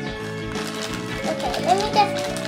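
Background music with held notes over a steady, trotting beat, and a brief high voice near the end.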